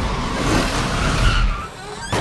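Motorbike skidding and sliding over a paved street, a loud steady rush of tyre and engine noise that drops away near the end.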